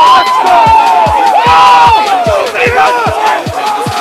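Several men shouting and yelling at once in celebration, long overlapping cries that rise and fall, over a music track with a deep, regular bass beat.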